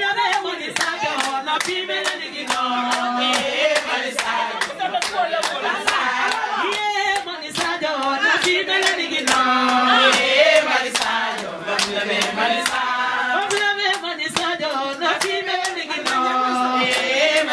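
A group of people singing together over steady rhythmic hand clapping, a few claps a second.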